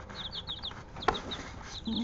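Week-old chicks peeping: runs of short, high cheeps, several a second, with a brief gap in the middle. A single light knock sounds about a second in.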